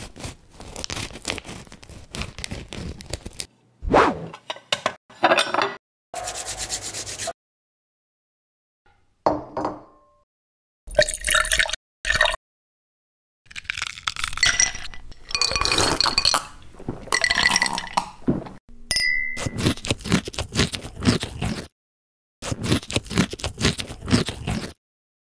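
A run of short cooking sound effects cut together with silent gaps between them. Quick knife taps on a wooden cutting board come first, followed by clinks, scrapes and ringing glass sounds as liquid goes into a glass.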